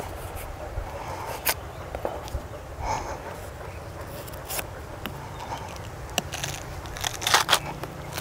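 Knife cutting into the rind of a small watermelon, with scattered sharp clicks and crackles; a cluster of cracks near the end as the melon is pulled open by hand.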